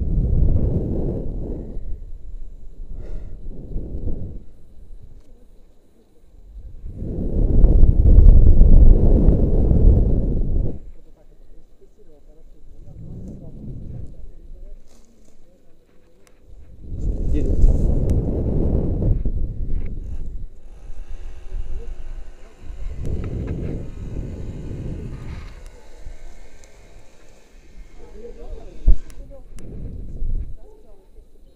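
Wind rushing over a body-worn camera's microphone in loud swells that rise and die away every several seconds, as a rope jumper swings back and forth hanging from the rope.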